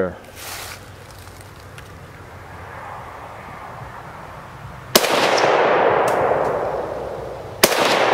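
Two rifle shots from an Arsenal SAM7 SF, a 7.62x39 mm AK-pattern rifle, about five seconds in and again about two and a half seconds later. Each crack is followed by a long echo that rolls on and fades.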